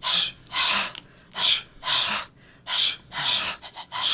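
People breathing hard and in rhythm, with about six sharp, loud, hissing breaths spaced roughly two-thirds of a second apart.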